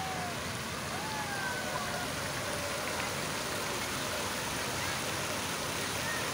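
Rows of decorative fountain jets splashing into a pool, a steady rush of falling water, with faint voices of people in the crowd.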